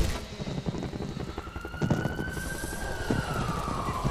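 A siren wailing: a single tone comes in about a second in, climbs slowly in pitch, then falls away through the last second, over a low crackling noise.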